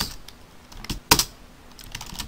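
Computer keyboard keystrokes: a few separate key clicks as code is typed, the loudest just over a second in.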